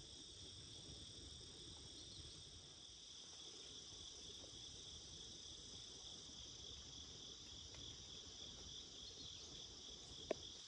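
Faint, steady, high-pitched insect chorus of late-summer crickets, continuous and unbroken, over a faint low rumble.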